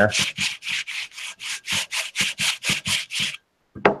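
Sandpaper on a wooden sanding stick rubbed quickly back and forth along the edge of a sheet of wood veneer, about six strokes a second, jointing the edge straight and smooth. The strokes stop about three and a half seconds in.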